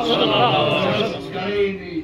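Speech: a man's voice talking in a language the recogniser cannot follow.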